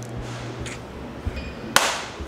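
A hand slapping at the camera for a cut: one short, sharp slap-like swish near the end, over faint room tone.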